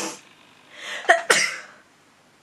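A woman sneezing into her hand: a short burst right at the start, then a noisy in-breath and a sharp sneeze about a second in.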